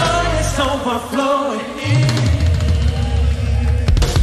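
Contemporary worship band music with a singing voice over bass, drums and guitar; the strong vocal line drops back about a second in while the band plays on.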